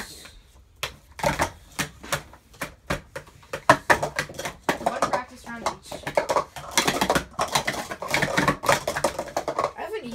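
Plastic sport-stacking cups clattering as two people stack and unstack them at speed in a cycle race. A dense run of quick clicks and taps that thickens from about a second in.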